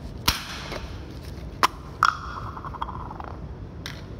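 Aerosol spray-paint can being handled and shaken: sharp clicks, then the can's mixing ball rattles in quick strokes for about a second.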